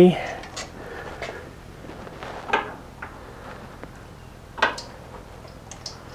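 A handful of short metal clicks and clinks from a socket and small 11 mm nuts being worked onto a carburetor's mounting studs. The two clearest are about two and a half and four and a half seconds in, with fainter ones between.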